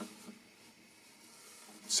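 Near silence: quiet room tone, with a voice starting again at the very end.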